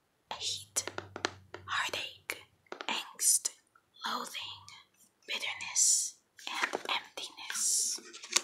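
Light whispering close to the microphone, in short breathy phrases with sharp hissing sounds and small clicks between them.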